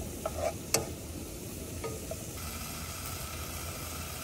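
Diced bacon frying in a nonstick pan on a portable gas camp stove, with a steady sizzle, while a slotted spatula stirs it and clicks against the pan a few times in the first two seconds.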